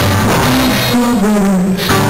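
Live band playing a song on electric and acoustic guitars with a drum kit, a melody of held notes stepping up and down over the steady band.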